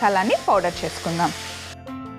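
A woman speaking for about a second, then soft background music of held tones.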